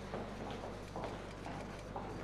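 Footsteps on a hard floor, a light even knock about twice a second.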